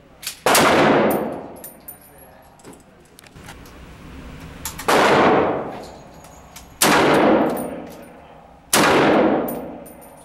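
Fulton Armory M1A rifle in .308 firing four single shots, one about half a second in and then three about two seconds apart near the end. Each very loud shot is followed by about a second of echo in an indoor range.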